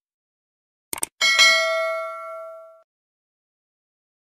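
A quick double click, then a bright bell ding that rings out and fades over about a second and a half: the notification-bell sound effect of a subscribe-button animation.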